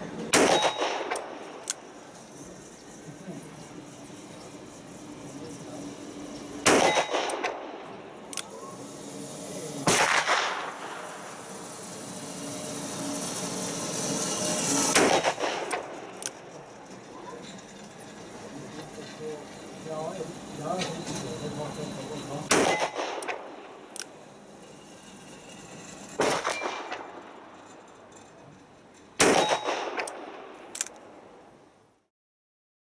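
Manurhin MR73 revolver firing .38 Special rounds slow-fire: single loud shots spaced several seconds apart, each followed by a short ringing tail.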